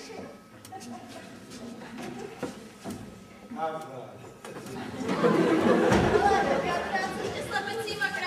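Indistinct voices and chatter, getting much louder about five seconds in, with a single thump about a second later.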